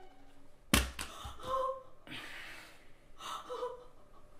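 A woman gasping in shock and sobbing: one sharp gasp about three-quarters of a second in, then fainter breathy, whimpering sobs.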